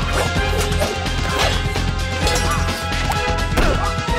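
Fight-scene soundtrack: a driving film score with a heavy beat, under a rapid run of blade clashes and hits, some with short metallic rings.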